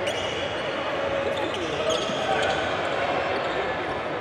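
A basketball bouncing on a hardwood court during play, with scattered sharp knocks over a murmur of voices in a large gym.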